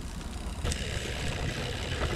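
Walk-behind broadcast spreader rolling across grass, its wheel-driven gearbox and spinner plate running as it throws granular fungicide: a steady mechanical whirring noise that grows a little fuller about half a second in.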